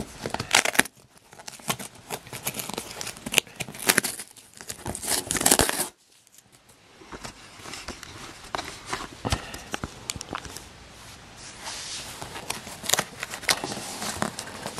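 Cardboard shipping box being pulled and torn open by hand: irregular ripping and scraping of cardboard and tape in uneven bursts, with a brief pause about six seconds in.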